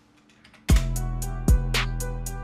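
Programmed trap beat playing back from the DAW, starting suddenly about two-thirds of a second in after a few faint mouse clicks: a deep 808 bass in E with two kick hits whose pitch drops, steady eighth-note hi-hat ticks, and a simple melody above.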